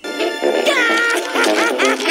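An animated character's high-pitched, squeaky laugh, a run of quick rising-and-falling 'ha' cries that starts about halfway through, over cartoon background music.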